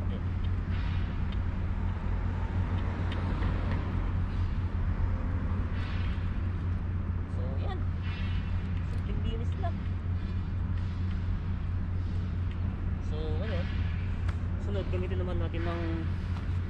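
Steady low outdoor background rumble, with faint voice-like sounds about halfway through and again near the end.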